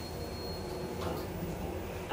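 ITK machine-room-less traction elevator car running as it arrives at a floor: a steady low hum with a thin high whine that stops about a second in.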